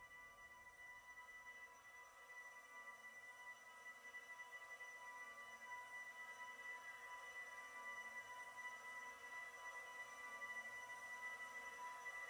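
Very quiet, sparse electronic music: steady high sustained tones with faint sliding tones underneath, slowly getting louder.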